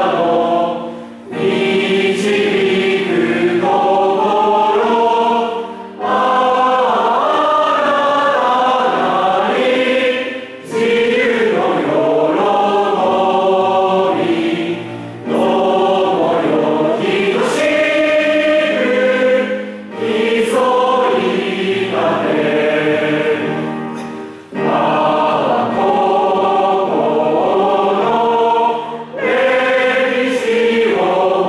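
A large mixed choir of boys and girls singing together, in phrases of about four to five seconds, each separated by a short pause for breath.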